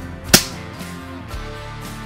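A single sharp crack about a third of a second in, from an air rifle shot at a metal field target, over background guitar music.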